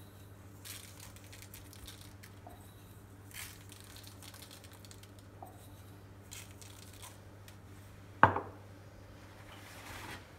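Faint scattered ticks and rustles of sesame seeds being pinched from a small glass jar and sprinkled over an unbaked filo pie. About eight seconds in, a single sharp knock, the loudest sound, as the glass jar is set down on the countertop.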